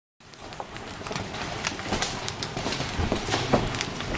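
Large hailstones falling and hitting the ground and pavement in many irregular sharp hits over a steady hiss, fading in over the first second or so.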